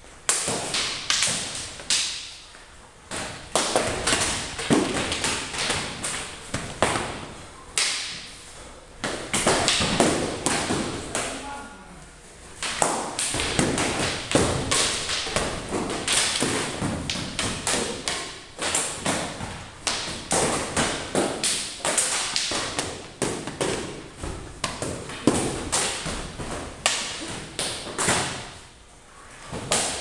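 Weapon-sparring strikes: irregular, rapid thuds and taps as practice weapons hit padded armour and each other, with feet moving on foam mats.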